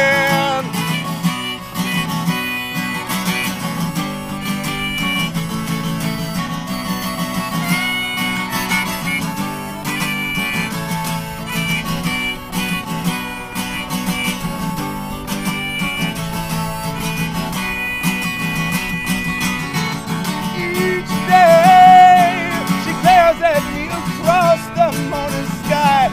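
Acoustic guitar strumming under a harmonica solo played from a neck rack, with long held notes. Near the end the playing gets louder, with wavering, bending notes.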